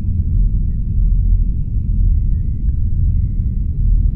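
A loud, steady low rumble, deepest at the bottom, with faint thin high tones above it that change pitch now and then.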